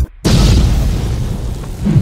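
Logo-reveal sound effect: a sudden deep boom a moment in, followed by a long low rumbling tail that swells once more near the end.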